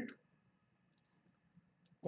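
Near silence with a few faint, sparse clicks: a stylus tapping on a pen tablet while a word is handwritten on screen.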